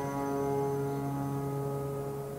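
A piano chord held and slowly dying away, its notes ringing steadily.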